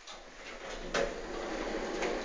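Thyssen-De Reus elevator car doors sliding, with a sharp clunk about a second in over a steady hiss.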